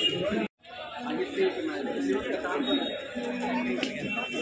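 Crowd chatter: many voices talking at once in a large, busy space, cutting out briefly to silence about half a second in.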